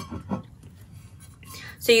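Mostly a pause in a woman's talk: quiet room tone with a few faint sounds in the first half-second, and her speech starting again near the end.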